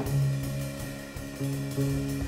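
Band music with held low notes over light drum kit and cymbal playing.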